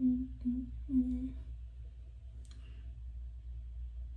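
A woman humming a few short held notes to herself, closed-mouthed, over the first second and a half, then a single small click a little past halfway, over a steady low background hum.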